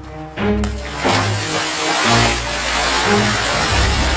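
Background music over a person plunging into a swimming pool: a big splash about a second in, then water churning and sloshing.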